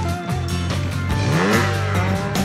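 Trials motorcycle engine revving, its pitch rising sharply about a second in, over background music with a steady beat.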